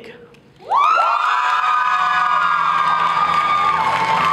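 Audience cheering, whooping and shouting, breaking out suddenly about a second in and holding loud and steady.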